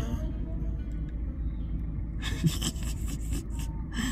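Steady low rumble of a car's idling engine heard from inside the car, with faint voices and a stretch of hiss in the second half.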